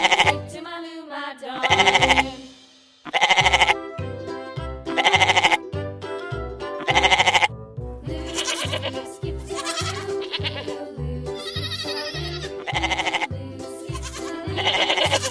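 Goats bleating repeatedly, a loud quavering bleat every second and a half to two seconds, over background children's music with a steady beat.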